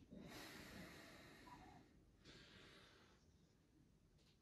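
Faint breathing of a person doing slow squats: one long breath of about a second and a half, then a shorter one of about a second.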